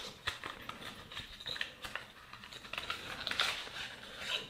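A small cardboard box being worked open by hand and a plastic tray of spare ear hooks and tips slid out: a scattered run of light clicks, taps and rustles.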